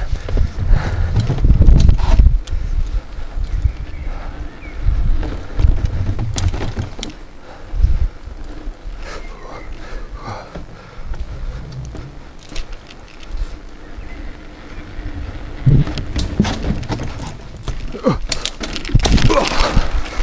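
Mountain bike riding over narrow wooden north-shore planks: rumble from the tyres and the bike's frame, with knocks and rattles as it rolls over the boards. A thicker run of clattering and knocks comes near the end as the bike comes off the woodwork onto woodchips.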